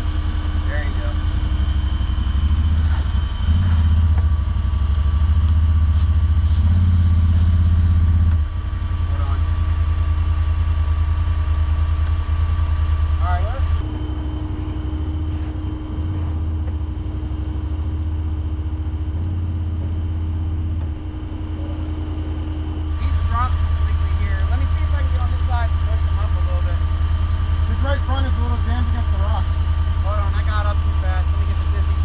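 Side-by-side UTV engine idling and running low and steady as the machine crawls down a rock drop in a creek bed.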